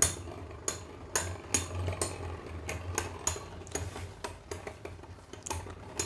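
Two metal-wheeled Beyblade spinning tops, Meteo L-Drago and Galaxy Pegasus, clashing again and again as they spin in a clear plastic stadium. The hits come as sharp, irregular metallic clicks, about two or three a second, over a low steady hum.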